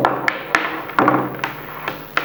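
Light knocks and taps, about six in two seconds, of an LED bulb, a plug and a cable being handled and set down on a wooden table.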